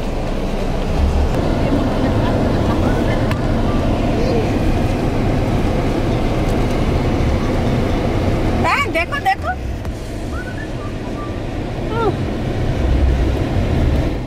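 Indistinct voices murmuring over a low vehicle rumble. A short, high, pitched call or shout comes about nine seconds in, and a single falling call comes about three seconds later.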